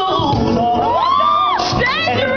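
Male gospel vocalist singing live into a microphone with music behind him: the voice glides up into a long held high note about half a second in, then drops away.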